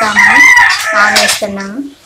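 A rooster crowing once, a call of about a second and a half, heard over a woman speaking.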